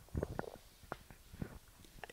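Microphone handling noise: about half a dozen soft knocks and rubs as a handheld microphone is passed over.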